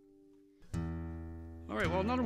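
Acoustic guitar: the last notes of a chord die away, then a new chord is strummed about two thirds of a second in and left ringing. A man's voice starts speaking over it near the end.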